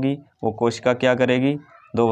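A man's voice speaking briefly, a short stretch of words between two brief pauses.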